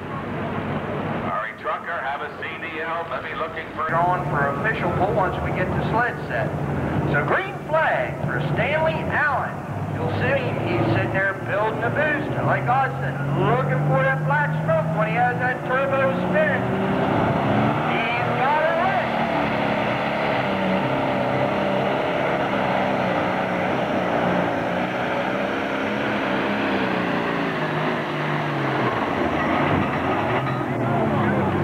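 Turbocharged diesel engine of a John Deere super stock pulling tractor, its revs climbing slowly as the turbocharger spools up, then running steadily at high rpm as it pulls, with a faint high whine above the engine.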